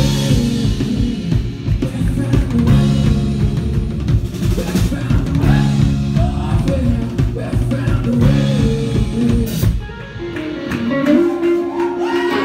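Live rock band playing loud, with electric guitars, a drum kit and a sung vocal. About ten seconds in, the drums and low end drop out suddenly, leaving electric guitar playing alone.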